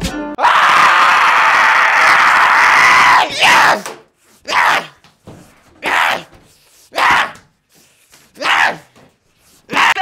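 A man screaming: one long scream of about three seconds, then five short yells spaced about a second apart.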